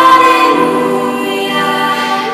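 A small group of girls singing together in long held notes, with a string ensemble accompanying; the harmony moves to a new chord about half a second in.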